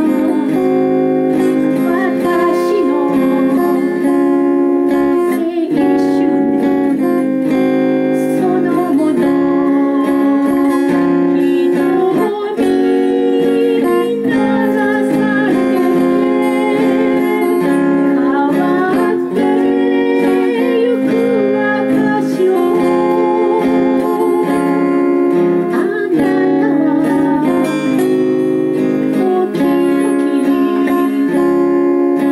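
A woman singing a slow folk-pop song in Japanese, accompanying herself on a steel-string acoustic guitar, playing steadily throughout.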